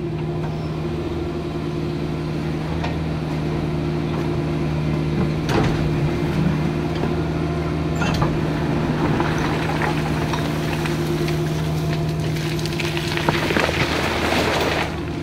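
Caterpillar mini excavator's diesel engine running steadily as it digs in a rocky riverbed, with sharp knocks at about five and eight seconds in and a burst of clatter near the end from the steel bucket striking and moving stones.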